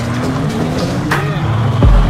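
Drift car engines running at low revs as the cars roll past slowly, with background music playing over them. A louder low rumble comes in near the end.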